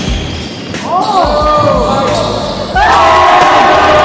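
Basketball game on a hardwood gym floor: the ball bouncing in low thuds while sneakers squeak in short rising-and-falling chirps from about a second in, then a louder, longer squeal near the end.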